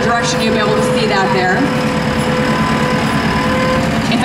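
JCB Teleskid 3TS-8T compact track loader's diesel engine running steadily as the machine turns in place on its rubber tracks, with a steady tone over the engine that stops near the end.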